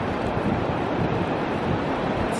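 Ocean surf washing on the beach with wind buffeting the microphone: a steady rushing noise.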